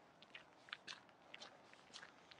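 Near silence with faint, irregular small clicks and ticks, about ten of them over two seconds.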